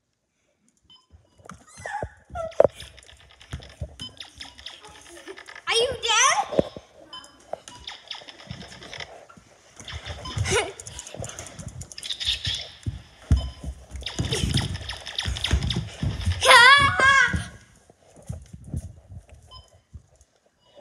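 A phone carried on the run, its microphone rubbed and knocked throughout, with two high, wavering squeals, one about six seconds in and a louder one near the end.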